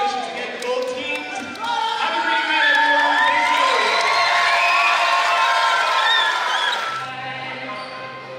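A group of teenage girls screaming and cheering together in celebration, many high voices overlapping, loudest in the middle. It dies down near the end as music fades in.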